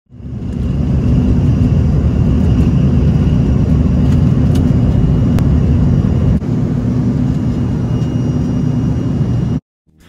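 Steady low rumble of a vehicle in motion, with a faint high whine over it, cut off abruptly just before the end.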